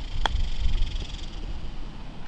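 A golf wedge striking the ball on a short chip shot: one crisp click about a quarter second in. Low wind rumble on the microphone runs underneath.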